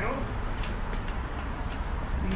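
Footsteps and white-cane taps climbing the last steps out of an underground station: sharp taps about three a second over a low, steady rumble of city traffic.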